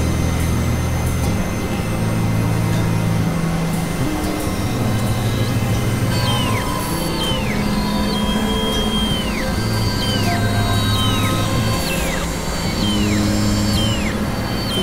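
Experimental electronic noise-drone music from hardware synthesizers (Novation Supernova II, Korg microKORG XL): a dense, hissy droning texture over low bass tones that step to a new pitch every second or two. From about a third of the way in, repeated high tones come in roughly once a second, each bending downward at its end.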